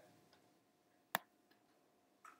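A single sharp click of a computer mouse button, as a word is selected in a code editor, against otherwise quiet room tone.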